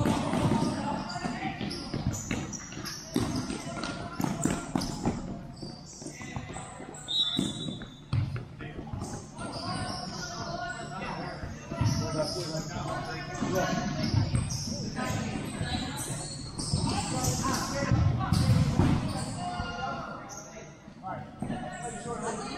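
Futsal game in a large indoor hall: the ball being kicked and bouncing on the court, with sharp knocks scattered through, under players' indistinct shouts and calls.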